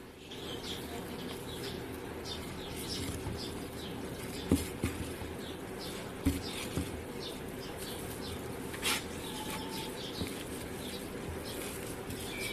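A hand mixing mashed potato with spices on a ceramic plate, with a few soft knocks against the plate. Underneath runs a steady low hum with faint high chirps.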